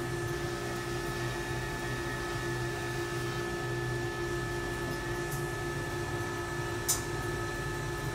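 Steady machine hum made of several constant tones, with one sharp click about seven seconds in as the autoclave door's handwheel is turned by hand.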